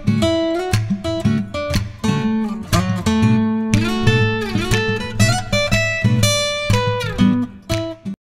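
Steel-string acoustic guitar played fingerstyle: a run of plucked melody notes over bass notes, each ringing out, with a few notes sliding in pitch partway through.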